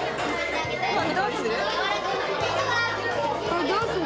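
A group of children's excited voices talking and exclaiming over one another.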